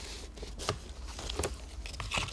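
Faint rustling of ribbon being drawn over a paper-wrapped gift box and pulled from its spool, with a few light ticks of hands handling ribbon and paper.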